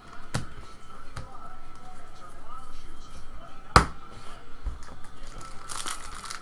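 Trading cards being handled and shuffled by hand, with two sharp clicks, the louder one a little before four seconds in. Near the end a foil card-pack wrapper begins to crinkle as it is picked up for opening. Faint background voices and a steady high tone lie underneath.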